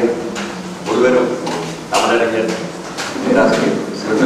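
A man speaking Tamil into a microphone, giving a speech in phrases about a second long with short pauses.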